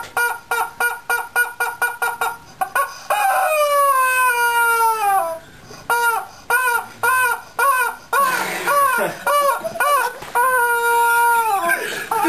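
Yellow screaming rubber chicken toy squeezed again and again: a quick run of short squawks, a long squawk that slides down in pitch about three seconds in, another run of short squawks, and a long held squawk near the end that drops off.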